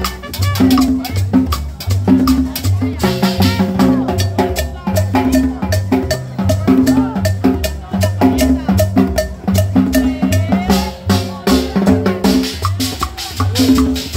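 A live street band playing Latin dance music: conga and timbale drums over a repeating bass line, with shakers and a singing voice.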